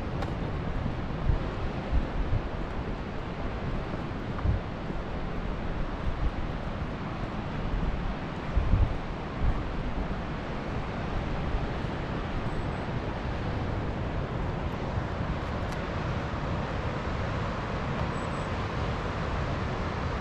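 Wind on the microphone: a steady rushing hiss with low rumbling buffets from gusts, most of them in the first half.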